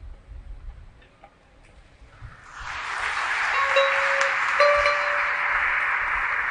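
Sasando, the Rotenese tube zither with a palm-leaf resonator, played softly with a few sparse plucked notes. About two and a half seconds in, a steady rushing noise swells up and holds, with a couple of held plucked notes ringing over it.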